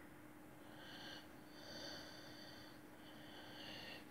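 Faint scratching of a coloured pencil shading on paper, in three strokes of about a second each.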